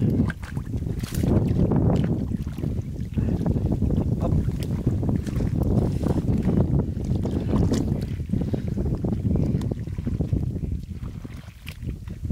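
Hands sloshing and digging through shallow muddy water and mud, with irregular splashes and squelches as fish are grabbed.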